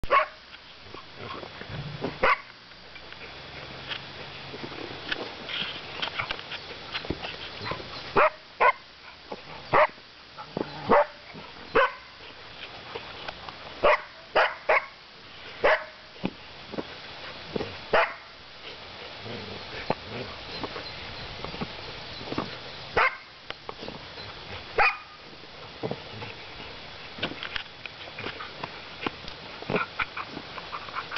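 A dog giving short, sharp barks at irregular intervals, a dozen or so spread over the stretch, while it mouths and paws at a leather football too big for it to pick up.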